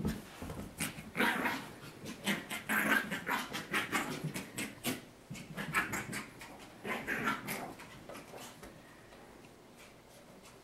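Maltese puppy making short, breathy vocal sounds in repeated bursts while playing with a ball, with small clicks among them; the sounds die away over the last couple of seconds.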